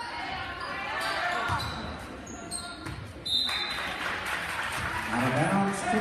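Basketball game on a hardwood gym court: a ball bouncing, sneakers squeaking and crowd voices echoing in the large hall. There is a short high squeak a little past three seconds, and voices shout louder near the end as play moves up the court.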